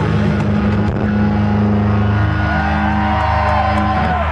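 A live rock band's distorted electric guitars and bass holding a loud, sustained closing chord, with a higher wavering note held above it that bends down near the end.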